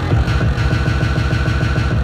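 Electronic dance music played live from a pad controller: a dense, rapidly pulsing bass line with no distinct drum hits, like a build-up between beats.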